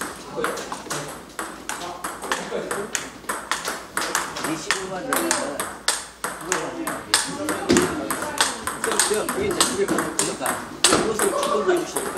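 Table tennis ball being struck by paddles and bouncing on the table in a rally: a quick, irregular series of sharp clicks.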